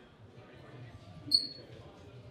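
A single short, high-pitched squeak about a second and a half in, over a faint murmur of room noise and distant voices.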